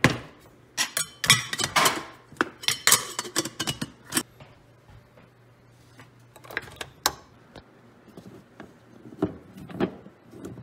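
Metal clinks and knocks of a stainless steel stovetop kettle being handled on the stove, in a quick run of sharp clatters over the first four seconds, followed by a few scattered clicks and knocks.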